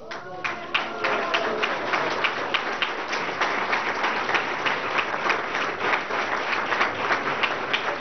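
Audience applauding steadily with many hands clapping.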